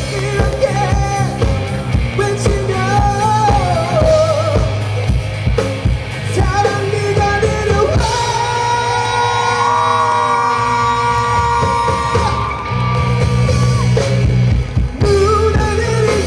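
Live rock band playing: a lead singer over electric guitar and drum kit. About halfway through the singing stops and long held, bending notes carry the melody for about four seconds, then the voice comes back near the end.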